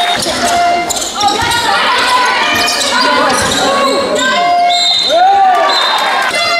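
Women's basketball game in a sports hall: sneakers squeak on the court floor in short squeals and chirps, the ball bounces, and spectators call out, all with the hall's echo.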